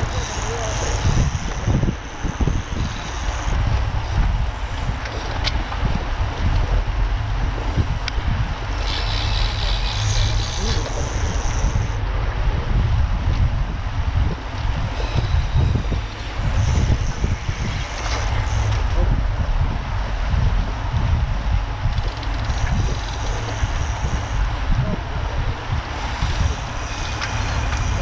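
Wind rumbling on the microphone of an action camera mounted on a road bike riding in a group, with tyre and road noise from the bunch underneath.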